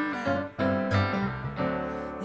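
Live band music between sung lines: a sung note fades out at the start, then instrumental chords are struck about three times with no singing over them.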